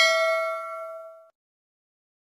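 Bell ding sound effect for a notification-bell click, a single struck bell with several ringing tones that fades out within about a second.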